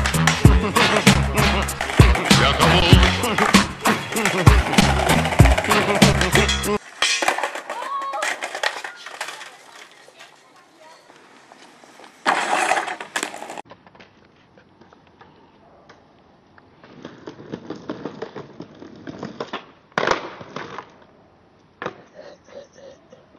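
Reggaeton-style rap music with a heavy beat that cuts off about seven seconds in. After it come quieter skateboarding sounds: a board rolling and a couple of short, louder bursts of board noise.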